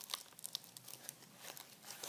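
Faint crinkling and rustling as hockey shin guards are handled, a scattered run of small crackles and clicks.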